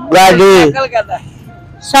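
A man's voice speaking loudly for about half a second near the start, then low street traffic noise with faint steady tones behind it.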